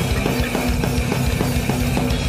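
Loud, fast rock band music: electric guitars over a rapid drum beat, with drum strokes several times a second.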